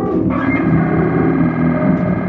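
Live free-improvised trio music: electric guitar through effects pedals, distorted, with a dense sustained chord of held tones that swells in shortly after the start and holds, over keyboard electronics and drums.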